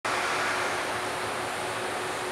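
Steady fan-like ventilation noise with a faint constant hum, holding at one level.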